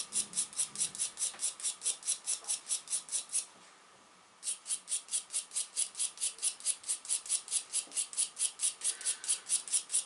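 Steel wire brush scrubbing a copper-nickel coin in quick back-and-forth strokes, about six a second, with a pause of about a second partway through. The brushing loosens the green oxide left on the coin after electrolysis so that it comes off faster.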